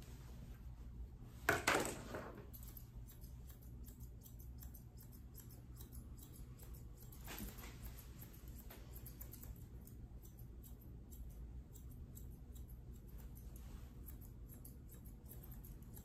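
Grooming shears snipping through a poodle puppy's coat: many quick, light snips in a row. A brief louder sound stands out about a second and a half in, over a steady low room hum.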